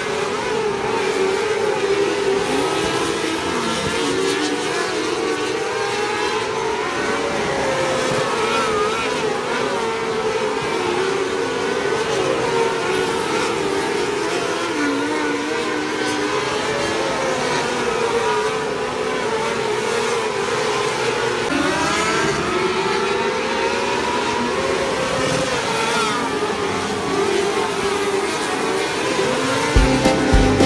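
A pack of micro sprint race cars running laps on a dirt oval, several engines at high revs overlapping and rising and falling as the cars pass. About two-thirds of the way through, one engine's pitch rises sharply as a car accelerates.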